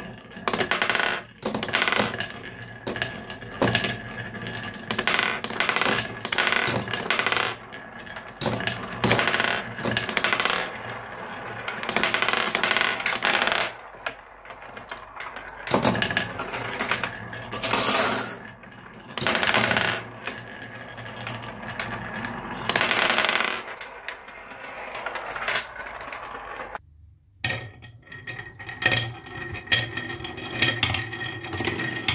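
Glass marbles rolling down a wooden wave-shaped marble-run track, rattling through the carved dips, with many sharp clicks and clacks as they knock together and drop onto a hard surface. The sound cuts out briefly about three seconds before the end, then the rolling starts again.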